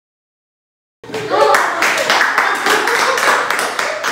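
Silence for about the first second, then a group of people clapping their hands, with several voices calling out over the claps.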